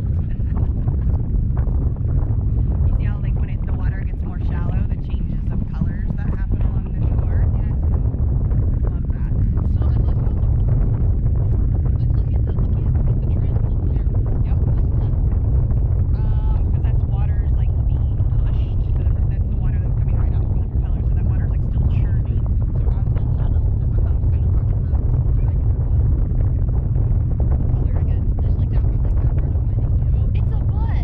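Wind buffeting the microphone of a camera hung beneath a parasail, a steady low rumble throughout, with faint voices now and then.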